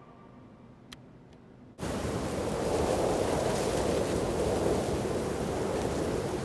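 The last of the song dies away with two faint clicks. Then, a little under two seconds in, a steady rushing noise cuts in abruptly and holds, an even outdoor-like ambience with no tone or rhythm in it.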